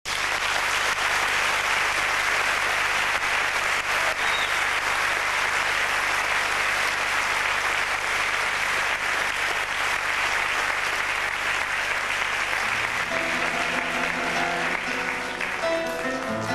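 Concert audience applauding steadily and loudly. Near the end, the first sustained notes of the song, a guitar among them, begin under the applause.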